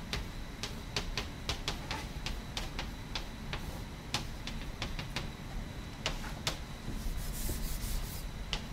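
Chalk writing on a blackboard: irregular sharp taps and clicks as the chalk strikes the board, with a short scratchy stroke about seven seconds in.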